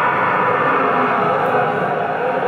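Soundtrack of a screened CG short film playing through a hall's loudspeakers: a dense, steady, music-like mix heard in the room.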